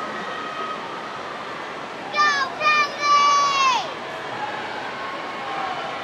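Steady din of a crowd of spectators at a swim race. About two seconds in, one spectator screams a three-note cheer, two short shouts and then a long one that falls in pitch at the end.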